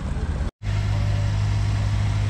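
Steady low engine hum, with a split-second dropout about half a second in.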